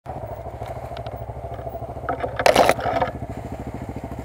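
Dirt bike's single-cylinder engine idling with an even, steady beat. About two and a half seconds in there is a brief, loud burst of noise.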